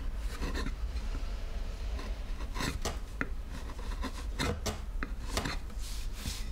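A blade slicing wood from the edge of a carved woodblock: a dozen or so short cutting strokes at uneven intervals, over a steady low hum.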